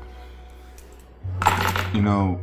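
Soft ambient music fades out. About a second later, over a low steady hum, comes a quick run of bright metallic clinking and jingling with a short ringing tail.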